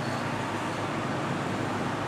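Steady street traffic noise, an even background hum with no sudden events.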